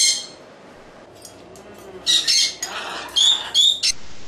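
Cockatoo squawking: a short, harsh, high-pitched call right at the start, a brief lull, then three more short squawks in the second half.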